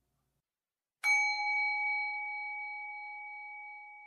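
A bell struck once about a second in, ringing with a clear tone that slowly fades, marking the end of the meditation.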